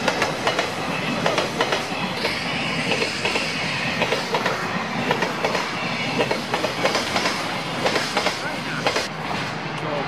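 Container freight train passing close by, its wagon wheels clattering over the rail joints in a steady, continuous run of clicks.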